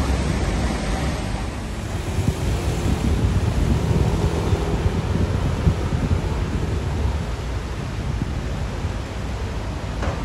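Wind rumbling on a phone's microphone over a city street's steady background noise, with no voices.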